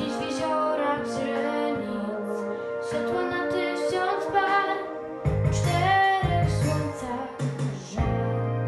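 A teenage girl singing in Polish over instrumental accompaniment. A stronger bass part comes in a little past halfway.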